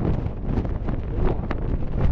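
Wind buffeting the microphone on the open deck of a moving speedboat: a steady low rumble with scattered crackles.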